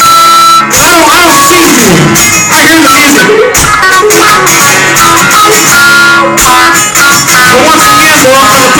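Two acoustic guitars strummed together with a man's voice singing over them, played live and recorded loud.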